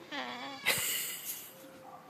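White cockatoo calling: a drawn-out, wavering call, then a loud harsh screech about two-thirds of a second in.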